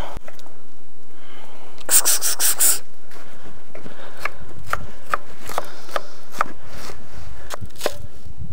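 Chef's knife chopping fresh herbs on a wooden chopping board: a quick run of strokes about two seconds in, then single knocks of the blade on the board about two a second.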